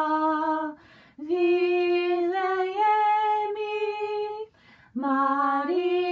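A woman singing a Christmas hymn unaccompanied, holding long steady notes, with two short breaths between phrases, about a second in and near five seconds.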